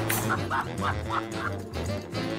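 A small dog yipping in a quick run of short, high barks, about three a second, over background music.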